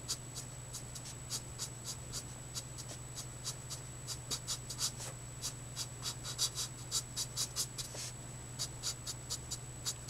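Nib of a Letraset Promarker alcohol marker scratching across paper in quick, short, irregular strokes, roughly three or four a second.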